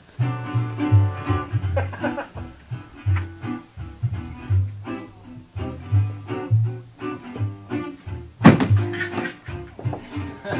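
A small live band playing: a washtub bass plucking a low bass line under a plucked string instrument. A single sharp thump near the end is the loudest sound.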